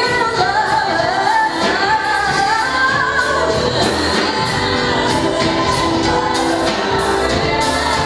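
Live R&B band playing with a woman singing lead into a microphone, over electric guitar, keyboards and drums with a steady beat.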